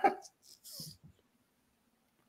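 The tail of a man's laughter fading out early, then a faint short breathy sound just under a second in, then near silence.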